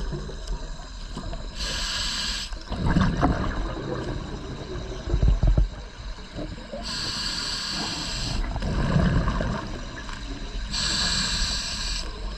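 Scuba diver breathing through a regulator underwater: three hissing inhalations about four seconds apart, each followed by a rush of exhaled bubbles.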